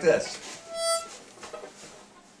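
A single short, steady harmonica note, held for about half a second, starting about half a second in.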